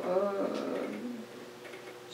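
A voice drawing out a syllable, its pitch sliding, fading away within about a second. After it the room is quiet, with a faint steady hum.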